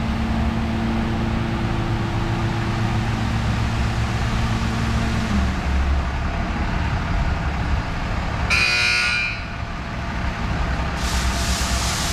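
Automatic tunnel car wash equipment running with a steady machine hum that drops out about five seconds in. A short loud buzzer sounds about three-quarters of the way through, and near the end the water spray jets start hissing onto the truck.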